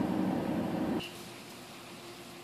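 Steady car noise heard from inside the cabin. It cuts off abruptly about halfway through, leaving a quiet background.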